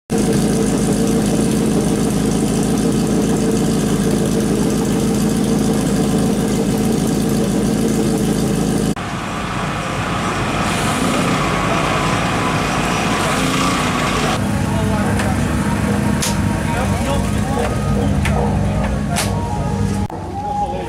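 Race car engines idling in the paddock, in separate cut-together shots. A steady engine drone stops abruptly about nine seconds in, then other engine sounds follow in two shorter segments, with a few sharp clicks near the end.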